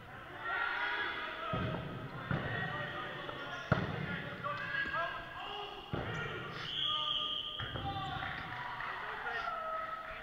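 Dodgeballs being thrown and smacking onto the sports-hall floor, walls and players, four sharp hits with the loudest about four seconds in, echoing in the large hall. Players call out throughout.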